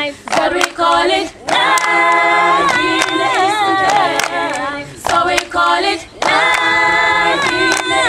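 An unaccompanied youth choir singing a chorus in harmony, with held, swaying notes and short breaks between phrases. Sharp hand claps are heard through the singing.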